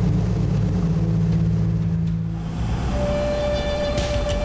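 Single-engine floatplane's piston engine and propeller droning steadily in flight. Music comes in about three seconds in.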